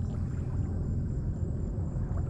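Wind rumbling on the microphone: a low, uneven noise.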